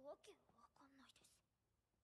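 Near silence with a faint, brief snatch of a voice speaking quietly in the first second or so.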